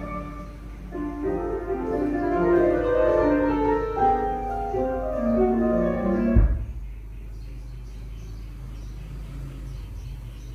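Piano music playing from a vinyl record on a turntable with a linear-tracking tonearm. About six seconds in, a short low thump as the stylus is lifted off the record, and the music stops, leaving a steady low hum.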